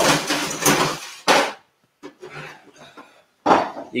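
Clattering and knocking of glassware and bar things being gathered, with a sharp knock just over a second in and fainter clinks after a brief pause.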